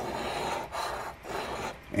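Large metal coin scraping the coating off a paper scratch-off lottery ticket, in a few strokes over the two seconds.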